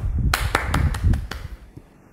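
Hand clapping heard through a video-call microphone: a quick run of sharp claps, about five a second, over a low rumble, dying away after about a second and a half.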